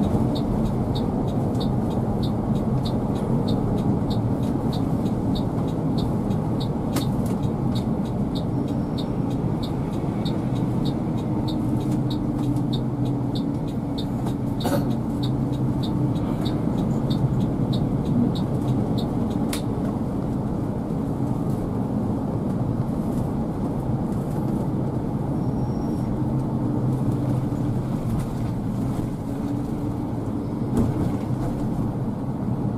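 Steady low engine and road noise inside the cabin of a moving three-axle coach. A regular high tick sounds about twice a second through the first half and stops about halfway through.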